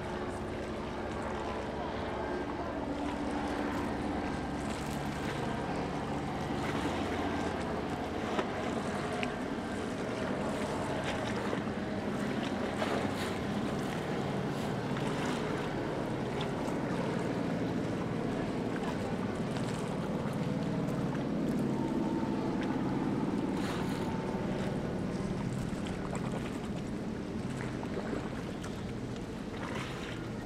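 Ambient sound out on the water: motorboat engines running, with wind and waves.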